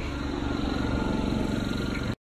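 Generator engine running steadily under load, with a rapid, even pulsing.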